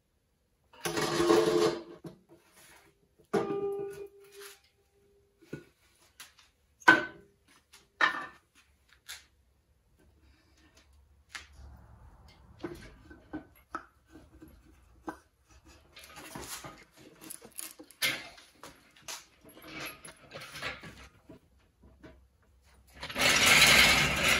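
Clanks, knocks and clicks of a Triumph TR6 straight-six engine block being unbolted from its engine stand and moved onto wooden blocks on a stool, with a brief metallic ringing a few seconds in. A louder stretch of handling noise comes near the end.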